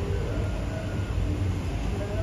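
Cable car gondola riding along its line, heard from inside the cabin as a steady low rumble.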